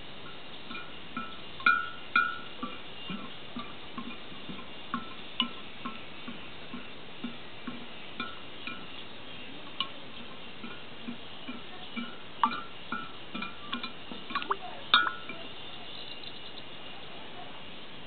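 Metal spoon stirring oil and water in a glass jar, clinking irregularly against the glass with short ringing notes, one or two a second, loudest about two seconds in and near fifteen seconds; the stirring is working the oil and water into a cloudy emulsion.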